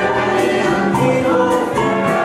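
Live salsa orchestra playing, with several singers singing together in chorus over horns and percussion keeping a steady beat.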